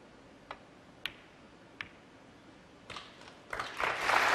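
Snooker balls clicking: a cue tip striking the cue ball and ball-on-ball contacts, three sharp clicks in the first two seconds as a red is potted. Audience applause starts building near the end.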